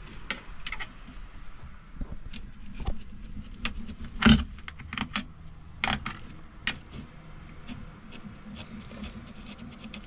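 Table knife clinking and scraping against a ceramic plate as cooked chicken breast is sliced: irregular clicks and knocks, the loudest about four seconds in, over a faint steady hum.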